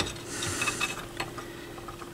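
A few light clicks and rubbing sounds as hands handle wires and plastic wire connectors on the turntable motor's leads.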